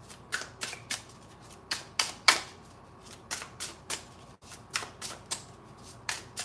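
A deck of cards being shuffled by hand: a string of irregular sharp clicks and snaps, a few of them louder than the rest.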